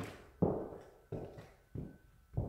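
Footsteps on a bare, uncarpeted floor in an empty room: three steps at an even walking pace, each thud followed by a short fade of room echo.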